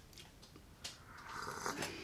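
A soft slurping sip of hot tea drawn in from a small cup, with a couple of light clicks around it.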